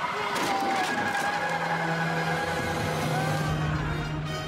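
A truck engine running hard, mixed with dramatic music.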